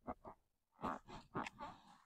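A factory suspension ("bouncy") driver's seat in a 1989 Mitsubishi Montero being pushed down by hand, giving a few short, faint creaks and squeaks as it moves on its springs.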